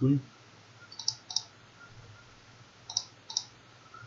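Computer mouse button clicks: four short, sharp clicks in two pairs, about a second in and again about three seconds in, as keys are selected one by one in the keyboard's lighting software.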